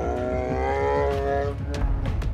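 A single long, drawn-out cry that rises a little at the start, then holds one pitch for over a second before fading, over a steady low rumble.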